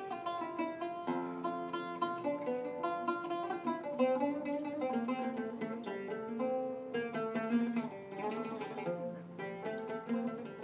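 An oud played solo: a plucked melody of quick single notes, some of them sliding in pitch.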